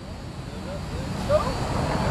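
Steady outdoor rumble and hiss from an open remote audio line, swelling over the first second and a half, with faint voices behind it.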